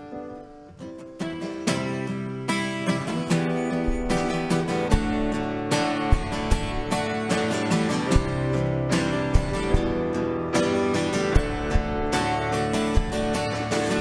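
Live worship band playing a song's instrumental intro, led by a strummed acoustic guitar. The rest of the band comes in with a steady drum beat about four seconds in.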